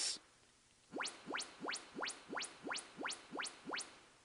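Yamaha AV receiver's YPAO calibration test signal played through a speaker: nine quick rising tone sweeps, about three a second, each gliding from deep bass up to a high pitch. These are the measurement tones the receiver uses to check the speakers and the room's acoustics.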